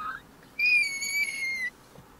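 A young child's high-pitched squeal: one loud held note a little over a second long, dropping slightly in pitch at its end.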